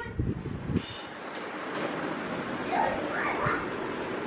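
Muffled knocks and rustling from handling in the first second, then a low background with a brief faint high-pitched child's voice about a second in and faint voice sounds near the three-second mark.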